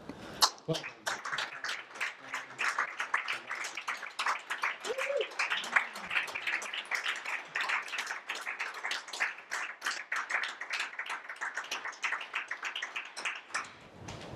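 Audience applauding: many hands clapping in a dense, irregular patter, with a brief voice partway through. The clapping stops suddenly near the end.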